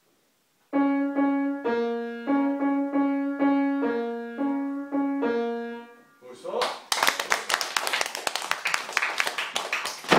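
A child plays a short, simple tune on a grand piano, about a dozen single notes at an even pace moving between a few neighbouring low-middle pitches. Applause from a small audience begins about a second after the last note.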